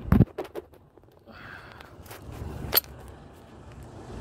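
Handling noise from a phone held in the hand: a loud thump at the start, a few short clicks, and one sharp click near the end, over a low rumble.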